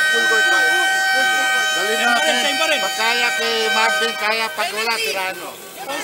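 A steady, buzzing horn tone holds on one pitch and stops about four and a half seconds in, over men's voices talking in a team huddle.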